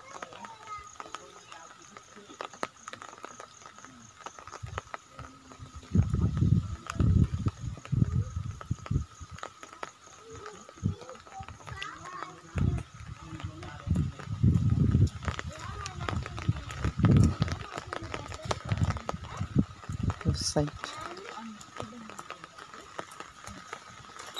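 Indistinct background voices with irregular low thumps and rumbles from a handheld phone being carried on foot, plus a faint steady high hum.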